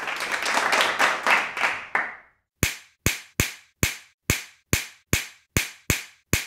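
Hand clapping: a brief patter of overlapping claps for about two seconds. After a short pause, single sharp claps follow at an even, slow beat of about two and a half a second.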